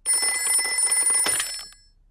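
Old-style telephone bell ringing in one burst of about a second and a half, then fading away.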